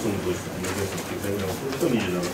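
Speech: a low-pitched voice talking in a small room.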